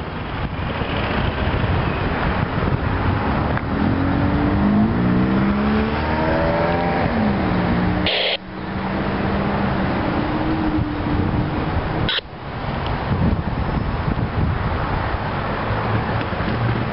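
Steady road traffic noise, with a motor vehicle accelerating a few seconds in, its engine pitch rising in steps and then settling. The sound briefly drops out twice.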